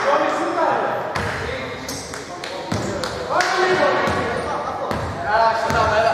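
A basketball bouncing on a hardwood court, with voices calling out, echoing in a large, nearly empty sports hall.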